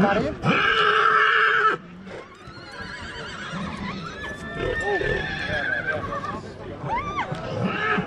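A horse whinnies loudly for about a second near the start, the call quavering in pitch.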